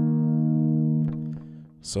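A D♯5 power chord on a Stratocaster-style electric guitar, ringing steadily, then dropping off about a second in and fading out near the end.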